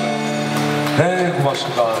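Two acoustic guitars let a chord ring steadily, likely the last chord of the song, then about a second in a man's voice comes in over the PA.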